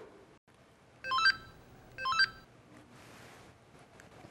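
A mobile phone ringing: a short electronic ringtone phrase of quickly rising beeps, played twice about a second apart.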